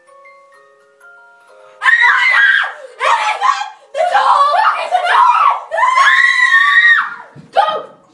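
A faint, tinkling tune of single notes, then about two seconds in, loud screaming breaks out in several long, high screams that run almost to the end.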